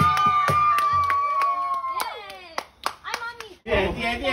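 A group of people clapping quickly and evenly over a long, held vocal cheer that ends about two seconds in. The clapping then thins out, and chatter starts near the end.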